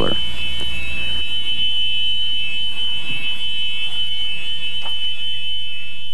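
Club Car electric golf cart's reverse warning buzzer sounding with a steady, high-pitched tone, the sign that the speed controller is being discharged with the forward/reverse handle in reverse.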